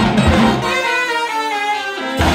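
Live jazz big band with saxophones and brass. A little over half a second in, the drums and bass drop out and the horns hold a sustained chord through a break, with the full band coming back just after.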